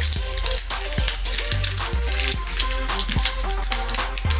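Background music with a beat and a repeating bass line.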